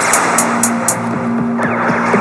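Instrumental electronic synthpop from a software synthesizer and 808-style drum machine app: a held synth note over a noisy wash, with quick regular hi-hat ticks and several falling synth sweeps in the second half.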